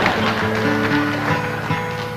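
A few notes picked softly on a twelve-string acoustic guitar and left to ring, in a live concert recording.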